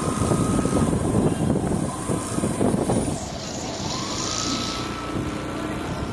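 Road and wind noise from a moving vehicle, rougher in the first half, with a thin steady whine that drops away and then glides back up in pitch a little past halfway.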